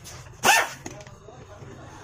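A single short, loud dog bark about half a second in, over steady low background noise.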